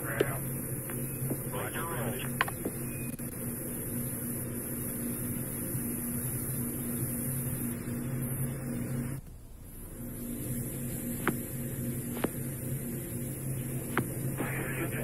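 Steady electrical hum with a low tone and evenly spaced overtones, briefly dropping out about nine seconds in, with a few faint clicks.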